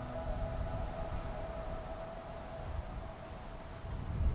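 Ambient soundtrack: a held, sustained tone fades away over the first couple of seconds, leaving a low rumbling drone.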